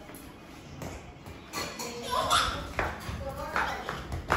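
A small child's high, excited wordless shouts and squeals, with a few sharp knocks of a toy ball on a tiled floor.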